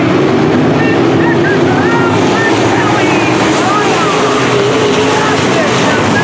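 A field of dirt-track modified race cars running laps at racing speed, their engines a loud, steady, overlapping drone as the cars pass the grandstand.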